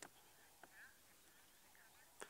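Near silence: faint outdoor background hiss, with one faint short chirp just under a second in.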